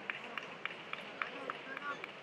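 Sports-hall background of distant voices with a steady run of sharp taps, about three a second.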